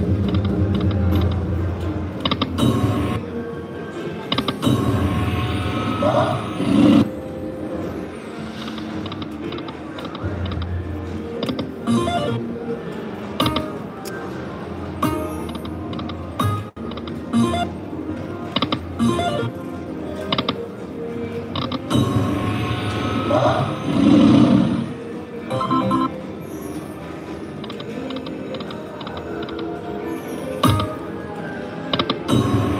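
Video slot machine's electronic music and jingles as the reels spin and stop over and over, with short win tunes as credits are added.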